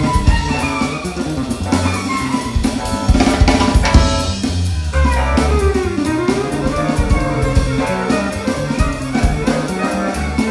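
A live jazz quartet is playing. A drum kit keeps a steady run of cymbal and drum strokes under an electric bass line and a stage keyboard. A bowed violin plays the melody and swoops down and back up in pitch about six seconds in.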